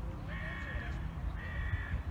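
A bird calling twice, each call about half a second long and steady in pitch.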